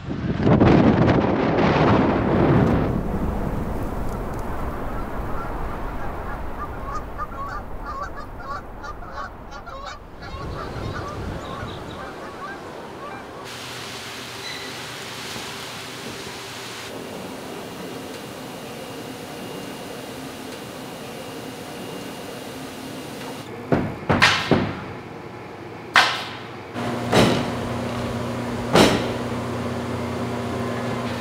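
Rushing noise, then a quick run of short bird-like calls, then a steady indoor hum. Several sharp knocks in the last few seconds are the loudest sounds.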